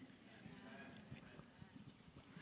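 Near silence: faint room tone with light, scattered low sounds.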